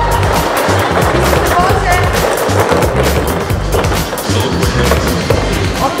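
Many small plastic capsules rolling and rattling down a plastic tube slide, over music with a steady beat.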